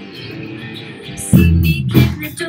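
Live rock band playing electric guitars and a drum kit. For the first second or so the playing is softer, with held guitar notes; then the full band comes back in loudly with drum hits.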